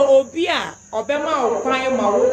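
A woman talking, with a brief pause near the middle, over a steady high-pitched tone that carries on throughout.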